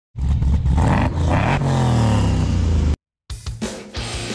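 A car engine revving, its pitch climbing and then falling away, cut off abruptly just under three seconds in. After a brief gap, music with a drum beat starts.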